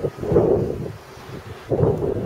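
Wind buffeting the microphone in two gusts, one just after the start and another near the end.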